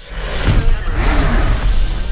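A car engine revving, loud, mixed with trailer music.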